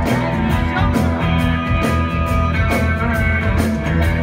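Live rock band playing an instrumental passage: distorted electric guitars and keyboards over heavy bass and a steady drum beat.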